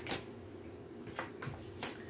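Tarot cards being turned over and laid down on a table: a few light, sharp snaps, the sharpest near the end.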